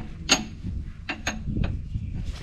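Four short clicks and taps from handling a tie-down strap as it is threaded around a UTV's front suspension A-arm. The first and loudest comes about a third of a second in, with a faint high ring after it.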